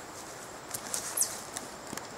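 Steady outdoor insect drone of crickets, with a few light ticks and rustles and a short high chirp that falls in pitch just after a second in.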